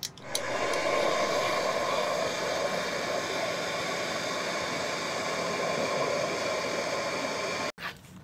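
Bernzomatic MAP-Pro hand torch burning with a steady hiss as its flame heats a corroded, seized bolt on an outboard motor to free it. The hiss starts just after the beginning and stops abruptly near the end.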